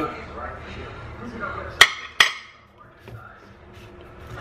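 Two sharp clicks about half a second apart: a metal spoon knocking against a refrigerated cinnamon-roll dough tube as it is worked at to open it.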